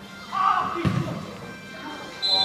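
A short shout from a man, then a single dull thump just before a second in, as play goes on at a football match.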